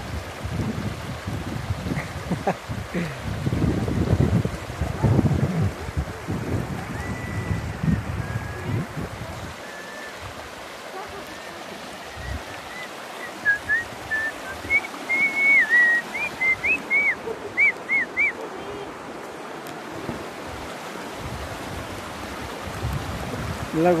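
Shallow river running over stones, a steady rush of water, with wind buffeting the microphone for roughly the first nine or ten seconds. Short high chirping whistles come and go through the middle.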